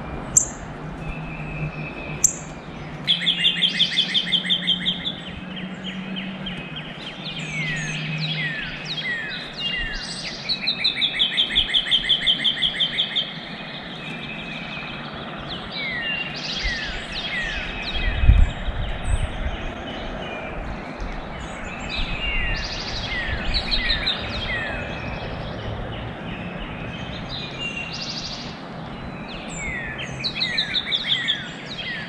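Songbirds singing: two long, rapid trills of evenly repeated high notes, the second one, about ten seconds in, the louder, among scattered short down-slurred chirps. There are two sharp clicks near the start and a brief low thump about eighteen seconds in.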